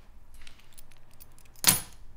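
A bunch of keys jingling lightly, then slapped down onto a kitchen countertop with one sharp metallic clack near the end.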